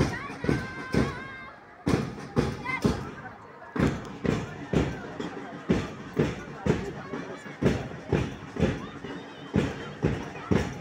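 A drum beating a steady marching time, about two beats a second, with voices mixed in.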